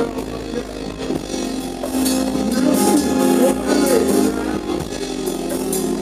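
Live band music: drums hitting about twice a second over sustained instrument notes and a wavering melody line.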